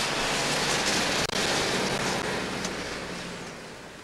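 Steady rushing outdoor noise with a faint low hum, dipping out briefly about a second in and fading toward the end.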